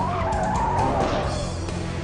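Car tyres squealing in a skid, a wavering squeal that fades about a second and a half in, with a film music score underneath.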